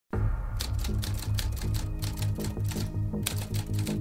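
Typewriter key strikes clacking in a quick, irregular run as a title is typed out, over a low pulsing musical drone. The clicks stop about three and a half seconds in, leaving the drone.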